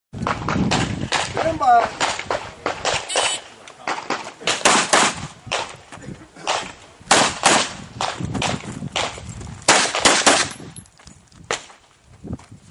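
Pistol shots in quick strings, many shots in all with short pauses between groups as the shooter moves to new firing positions, each shot sharp and followed by a short echo.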